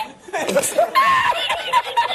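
People laughing in short chuckles and snickers, mixed with bits of speech.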